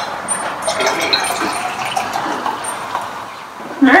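Champagne being poured into a glass flute, fizzing steadily with a crackle of bursting bubbles.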